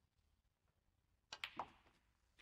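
Snooker balls: a faint tap of the cue on the cue ball near the start, then a quick cluster of sharp, loud clicks of balls knocking together about a second and a half in.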